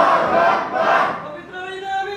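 A crowd of men calling out together in unison in a few loud surges, answering a chanted recitation.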